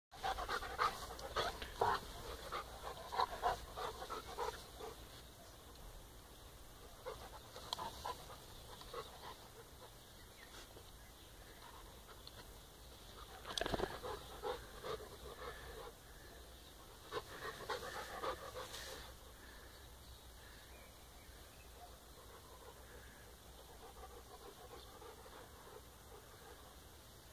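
Bernese Mountain Dog and Czechoslovakian Wolfdog puppy at play, panting in short bursts. The panting is loudest and busiest in the first few seconds and comes back in shorter spells later on.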